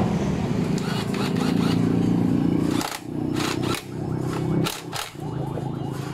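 A motor vehicle engine running steadily nearby, dropping out briefly a few times. A few sharp metallic clicks, like tools being handled, come in the middle.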